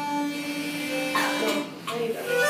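Children blowing harmonicas: a long held chord that breaks off about a second and a half in, with new notes starting near the end.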